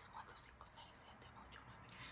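Near silence: room tone with faint soft mouth and breath sounds.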